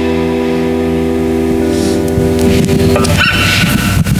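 A worship band's final chord held and ringing out, then breaking into loose string and handling noise from the acoustic guitars and mandolin between songs. Near the end comes a brief high-pitched tone.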